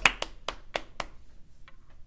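Three people clapping their hands, a short round of claps that dies away about a second in.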